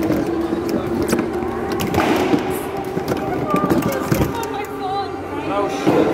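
Indistinct voices in a gym, with scattered knocks and clatter of equipment and a steady low hum.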